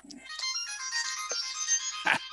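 Phone ringtone playing a melody of high electronic tones.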